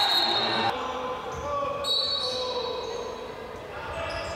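Referee's whistle blown twice in a sports hall, each blast a steady shrill tone. The first cuts off under a second in and the second comes about two seconds in, signalling that the free kick may be taken. Crowd voices run underneath.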